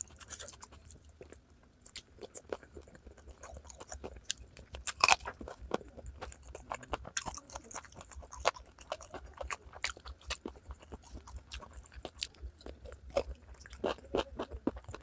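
Close-miked chewing and crunching of curried chicken feet, a run of sharp crackles and wet clicks, with the loudest crunch about five seconds in.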